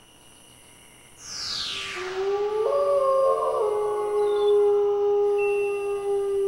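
Studio logo sting: a synth sweep falling in pitch about a second in, then a long, held wolf howl over sustained synth chords that step in pitch.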